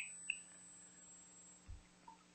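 Near silence: faint steady low hum of room tone, with one soft low thump near the end.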